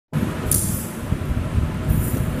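Steady low rumbling background noise with no speech, and a brief high hiss about half a second in.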